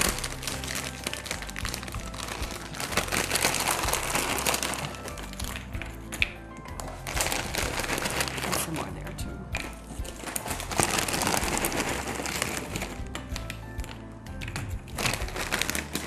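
Foil bag of vanilla wafers crinkling over and over as a hand reaches into it and wafers are tipped out into the pudding bowl.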